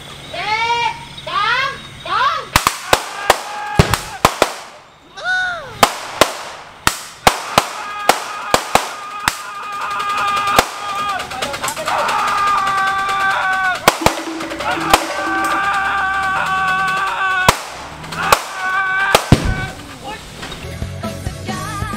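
Gunfire from prop guns firing blanks: many sharp shots in quick, irregular succession, thinning out after about ten seconds. From there, music with held tones plays under the remaining shots.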